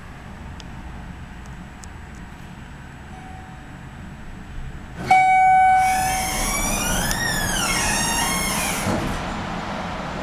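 Low hum inside a hydraulic elevator car for about five seconds. Then a sudden loud steady tone lasts under a second, followed by a siren wailing up and then down once over about two seconds, over a louder background.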